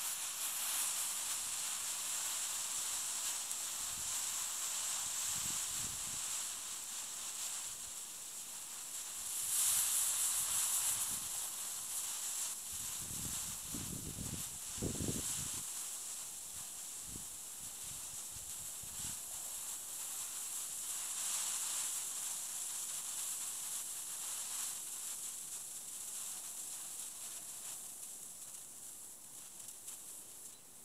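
A 75/25 potassium nitrate and sugar smoke mixture burning down with a steady hiss. The hiss swells briefly about ten seconds in, then slowly fades as the burn dies out, with a few low rumbles around the middle.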